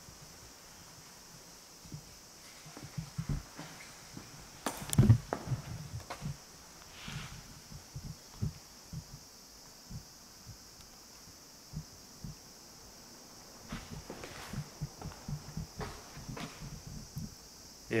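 Faint, irregular footsteps and small knocks of someone walking through a room, with one louder knock about five seconds in, over a steady hiss.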